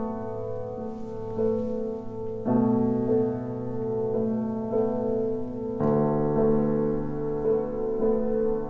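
Grand piano playing slow, sustained chords under a softly repeated note, changing harmony about two and a half seconds in and again about six seconds in. It is the still, calm opening material of a solo piano piece.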